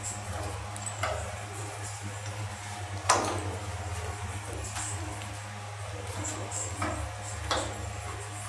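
Metal clanks and knocks from a homemade tube bender's die and locking pin being handled and fitted, five or so sharp hits with the loudest about three seconds in, over a steady low hum.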